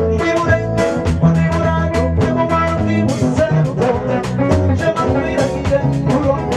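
Live band music: electric guitar, drum kit keeping a steady beat, keyboard and bass, with a man singing into a microphone over it.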